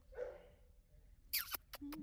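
A dog gives a short, high whimper about a second and a half in, falling quickly in pitch, followed by a few faint clicks.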